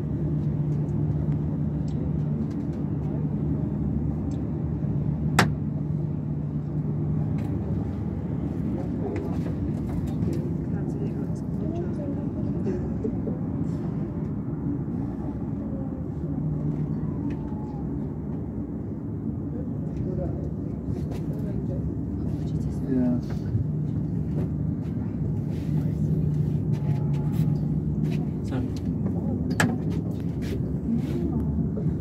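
Cableway gondola in motion: a steady low rumble and hum, with a low tone that fades in and out and a sharp click about five seconds in.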